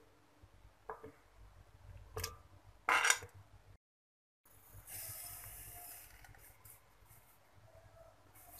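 A metal spoon clinking against a bowl and a glass blender jar as mango chunks are scooped in, three clinks with the loudest about three seconds in. After a brief cut, granulated sugar pours into the blender jar with a steady hiss that fades out.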